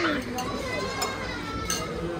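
A few light clinks of metal spoons and forks against ceramic bowls while people eat, with voices talking over them.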